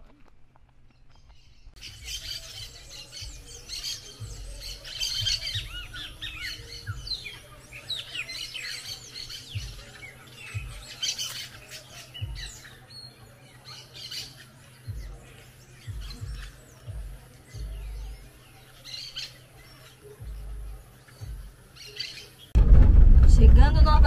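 A flock of birds in a tree canopy chirping and squawking, a busy chorus of short, high calls. Near the end it cuts abruptly to a much louder passage with a low rumble.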